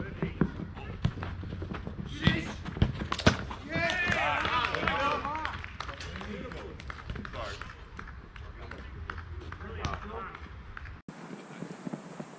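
Sharp thuds of a football being kicked, loudest about three seconds in, with players' shouted calls around the middle and footsteps running on artificial turf, over a steady low rumble.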